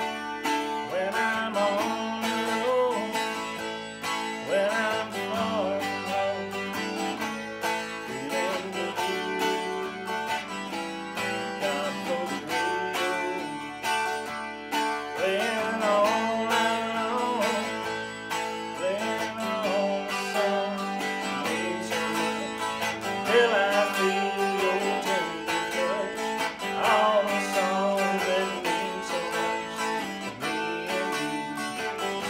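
Electric guitar, a solid-body Stratocaster-style instrument, played in a country style: a picked melody line with notes that bend in pitch, over sustained chord tones, as an instrumental break in the song.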